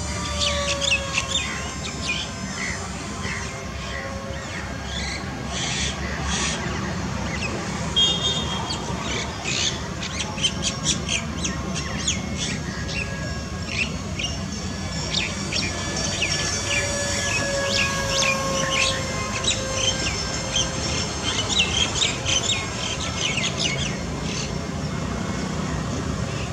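Wild birds chirping and calling densely throughout. Beneath them a faint whine from the small RC jet's electric motor slides slowly down in pitch as the plane passes, once near the start and again about 16 to 20 seconds in.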